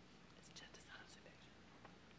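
Near silence: room tone with faint, indistinct whispering in the first half.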